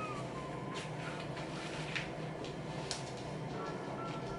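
Faint scuffing and fabric rustling as two people shift their weight and move their bodies on a cloth sheet laid over a hard floor, with a few brief scuffs over a low steady hum.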